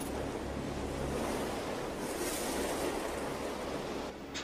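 Steady wind rushing over the dune: an even noise with no separate events.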